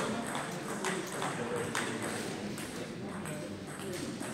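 Table tennis ball being struck back and forth in a rally: several sharp clicks off bats and table, with people's voices murmuring in the background.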